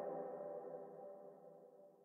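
The last chord of the song ringing out after the music cuts off sharply, several sustained tones fading away over about two seconds.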